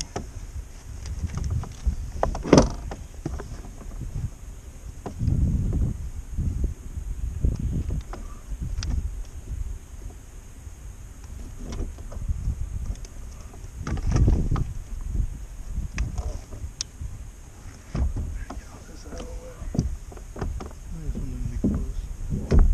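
Irregular low thumps and knocks of gear being handled against a plastic fishing kayak, with a sharp click about two and a half seconds in and a few lighter clicks later.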